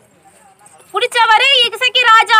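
A woman speaking. Her speech starts about a second in, after a short pause.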